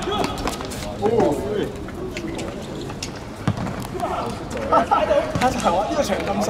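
Men's voices shouting and calling across a football pitch during play, with a couple of sharp thuds of the ball being kicked, one around the middle and one near the end.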